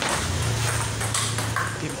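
Table tennis rally: the celluloid ball clicks sharply off bats and table a few times, over a steady low hum.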